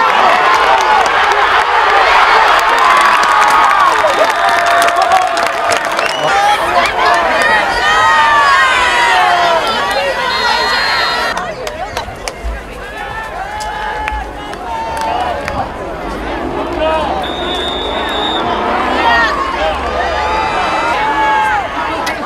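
Football stadium crowd cheering and shouting from the stands, loudest in the first few seconds. After an abrupt change about 11 seconds in, it settles to a quieter din of many voices.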